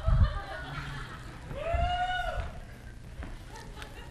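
A low thump, then a short high-pitched vocal sound that rises and falls, over quiet room noise.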